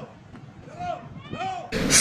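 Faint, distant shouts of players: three short high calls, each rising and falling in pitch.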